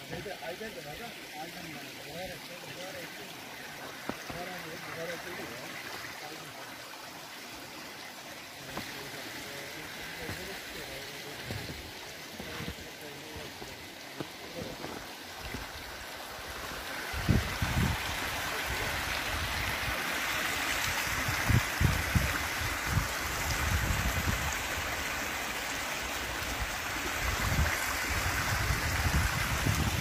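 Hot-spring water running over rocks in a shallow stream, a steady rushing that grows louder a little past halfway, with low thumps against the microphone.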